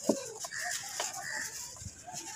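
A dry lump of gritty red sand crumbling in the hands, with crackles and sand trickling into a tub. Chickens cluck in the background, with the loudest call, a falling one, right at the start.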